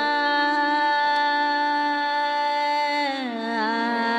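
Indian classical music in raga Bihag: a long, steady held note over a drone, sliding down with ornamented wavers about three seconds in, as in the slow opening elaboration of the raga.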